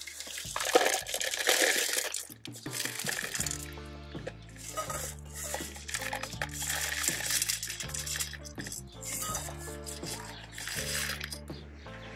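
LECA clay pebbles poured from a stainless steel bowl into a plastic orchid pot: an even rushing noise in three spells, the first and loudest near the start. Background music with a steady bass line comes in about three seconds in and runs under it.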